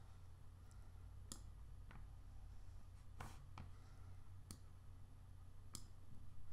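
Faint, irregular clicks of computer controls, about seven over six seconds, over a low steady hum in near silence.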